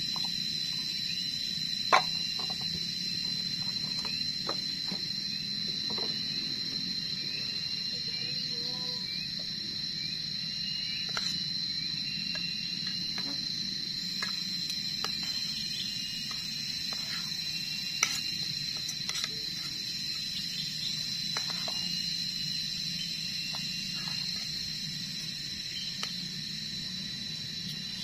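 Steady high-pitched insect drone with small chirps repeating every second or so, over a low steady hum. Now and then a sharp click of a spoon against a metal camping pot; the loudest come about two seconds in and near eighteen seconds in.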